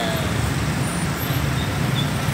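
Steady road traffic at a busy junction: the engines of motorcycles, scooters, cars and a box truck running together.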